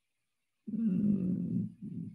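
A man's low, rough throat sound made with his mouth closed, a creaky hum or nasal breath: one lasting about a second that starts about two-thirds of a second in, then a shorter one near the end.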